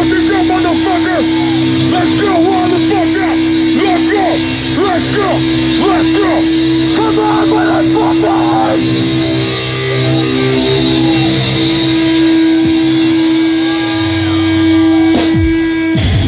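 A live slam death metal band plays loudly through amplifiers. A steady held note or feedback drone runs under many short squealing pitch bends. The bends thin out about nine seconds in, and the drone cuts off suddenly shortly before the end.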